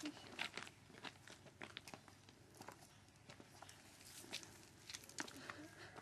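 Near silence with faint, irregular clicks and crackles scattered throughout.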